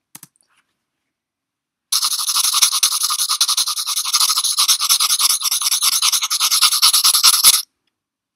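Pencil-scribbling sound effect: a fast, dense scratching of pencil on paper that starts about two seconds in and cuts off suddenly near the end.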